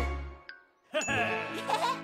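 A bright cartoon ding, a short bell-like chime about a second in, over playful cartoon music.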